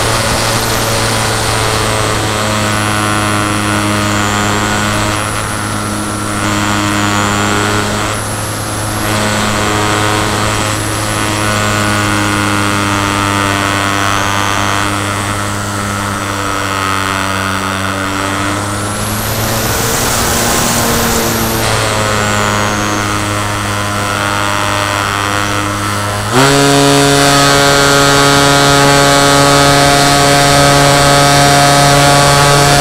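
Onboard sound of a Hangar 9 Sundowner 36 electric EF1 racer's motor and propeller in flight, a steady hum with wind rushing past. About three-quarters of the way through, the pitch jumps sharply higher and it gets louder as the motor speeds up.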